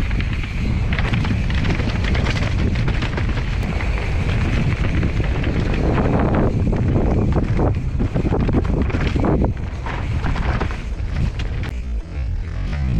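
Wind buffeting the microphone of a camera on a mountain bike, over the rumble and rattle of the bike's tyres and frame running down a rough leaf-covered dirt trail, with frequent short knocks from roots and stones.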